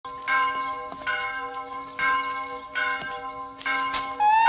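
A bell tolling: five strokes a little under a second apart, each left ringing into the next.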